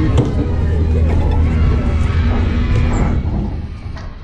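Indistinct voices mixed with background music and a steady low hum, which drop away about three and a half seconds in.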